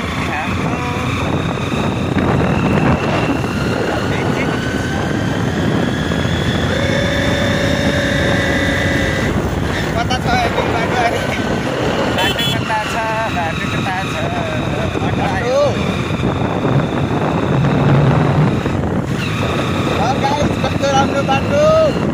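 Motorcycle riding steadily along a road, its engine and wind noise on the microphone running together throughout, with a voice heard briefly at moments.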